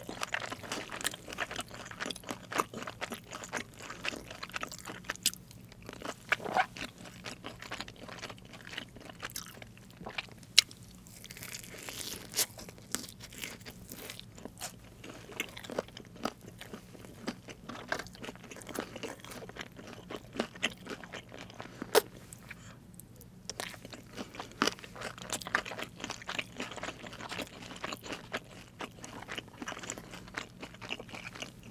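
Close-miked chewing of crispy fried chicken: a dense run of sharp crunches and wet chewing, with a few louder crackles standing out.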